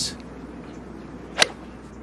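A golf iron striking the ball from the fairway: one sharp crack about one and a half seconds in, over a faint background.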